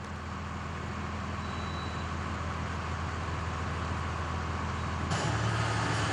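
Food truck's engine running and road noise, heard from inside the cab while driving, as a steady low hum that grows slightly louder. The tone shifts about five seconds in.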